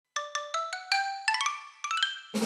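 Opening title jingle of bell-like struck notes climbing upward in pitch, about a dozen in all, the later ones in quick clusters of three or four.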